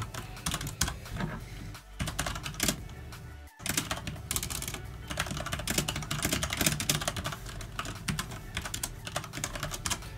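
Fast typing on a computer keyboard: quick runs of keystroke clicks as a line of code is entered. The sound cuts out for an instant about three and a half seconds in.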